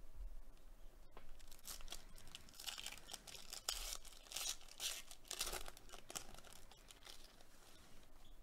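A foil-wrapped trading card pack being torn open and crinkled by hand: a run of crackling rips and rustles, thickest in the middle and easing off near the end.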